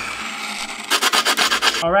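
Gritty scooter grip tape being rubbed hard along the edge of the deck: a steady scrape at first, then about a second of rapid back-and-forth strokes.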